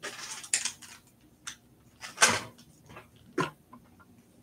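A few short rustles and scuffs of items and packaging being handled and moved about during an unboxing, the loudest a little over two seconds in.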